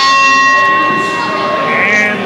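Wrestling ring bell struck in quick strokes, the last at the start, then ringing on and fading for about a second and a half: the bell that starts the match.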